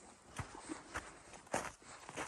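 Footsteps of a person walking along a snow-covered trail: three faint, evenly paced steps about half a second apart.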